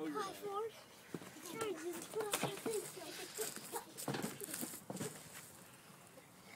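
Children's voices, with a few sharp knocks and scuffs of hands and feet on a wooden plank trailer deck as a boy climbs onto it and crawls across.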